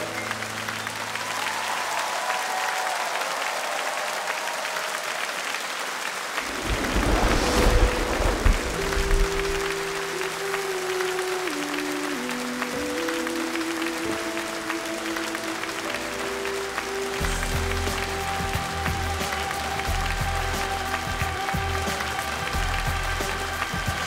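Studio audience applauding after a song ends, swelling loudly about seven seconds in. Instrumental music with long held chords joins the applause, with bass coming in over the second half.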